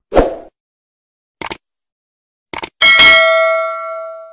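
Subscribe-button animation sound effects: a short hit, then two quick double clicks about a second apart, then a bell ding about three seconds in that rings out and fades.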